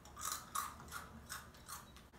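A person chewing a crunchy, chip-like candy: about five quiet, regular crunches.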